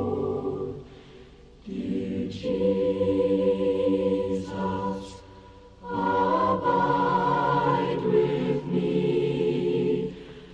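A family chorus singing a hymn a cappella in sustained chords. The singing breaks briefly between phrases about a second in and again about five seconds in.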